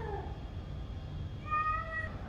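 A high-pitched animal call: one falling away at the start and a short, steady one near the end, over a low steady background rumble.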